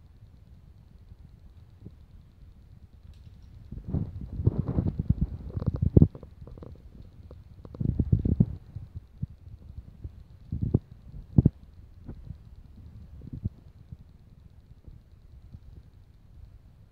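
Rustling and low thumps from a child handling and moving about close to the microphone, with small plastic Lego pieces clicking. It comes in bunches, loudest around a quarter and a half of the way through, with a couple of sharp clicks after the middle.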